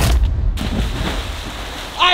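A person jumping feet-first into a swimming pool: a sudden loud splash as they hit the water, then a steady rushing noise of churned water.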